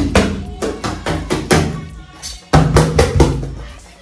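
A run of loud, irregular percussive knocks, heaviest right at the start and again about two and a half seconds in, over music.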